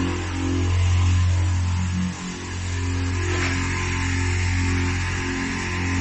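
Car-wash chemical pump (the shampoo-from-arm pump) running with a steady low electric hum and a few steady higher tones above it, dipping briefly about two seconds in.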